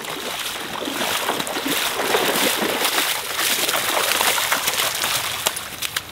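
Legs wading through shallow river water at a walking pace: steady, irregular sloshing and splashing with each stride, which eases off near the end.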